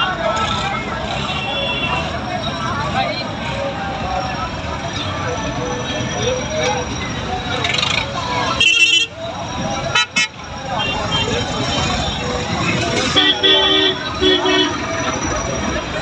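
Vehicle horns tooting in short blasts over a steady din of crowd voices and engines, with two close blasts near the end and a brief loud burst of noise about nine seconds in.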